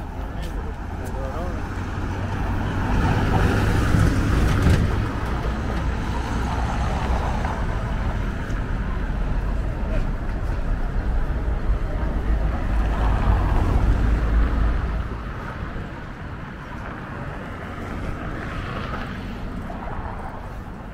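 City street ambience: a deep rumble of traffic that swells as vehicles pass, loudest twice and easing near the end, with voices talking in the background.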